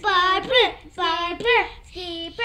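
A child's high voice singing a wordless tune, each phrase a held note followed by a quick swooping rise and fall, twice.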